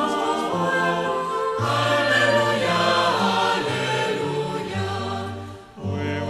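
Choir singing a slow Taizé chant in long held chords, with the bass moving from note to note; the sound dips briefly near the end before the next phrase begins.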